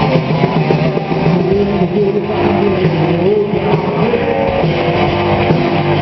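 Live rock band playing: two electric guitars, electric bass and drum kit, with a lead guitar line that wavers and bends in pitch over the rhythm.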